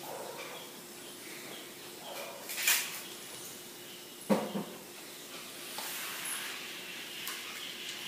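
Alternate-nostril breathing in surya bhedana pranayama, with one nostril held shut: a sharp hissing nasal breath a little past two and a half seconds in, a shorter, lower puff of breath just after four seconds, then softer breathing.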